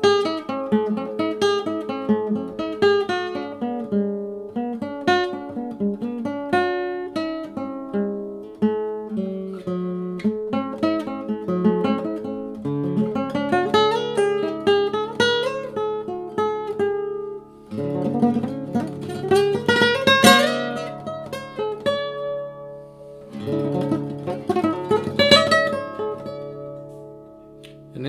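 Solid-wood nylon-string classical guitar in an altered flamenco-style tuning (E B F# D A D, low string dropped to D, G string lowered to F#), improvised fingerstyle: quick runs of single plucked notes and arpeggios for the first half, then two strummed full chords dug into hard and left ringing out in the second half.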